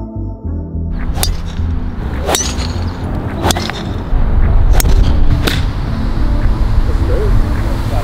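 Electronic music cuts out about half a second in, giving way to open-air sound on a golf course: a low steady rumble with five sharp clicks spread over the next few seconds, one of them a golf club striking the ball off the tee.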